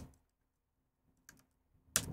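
Near silence with a faint steady hum, and a faint click or two from computer keyboard keys, the clearest about halfway through, as the Command+D shortcut is pressed to toggle the colour grade off and on.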